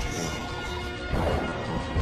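Dramatic film-trailer score with a crashing impact sound effect, the sharpest hit near the end.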